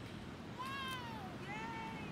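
A young child's high-pitched voice making two drawn-out calls, the first rising then falling, the second shorter and nearly level.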